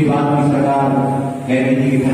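A man's voice held on a steady, level pitch, drawn out like a chant rather than broken into ordinary words, with a short break about one and a half seconds in.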